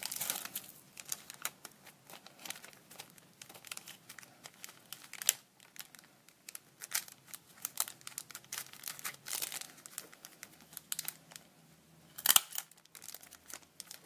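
Clear plastic packaging bag crinkling and crackling as it is handled and a printed card is slid in, in irregular bursts, with louder rustles about five seconds in and again near the end.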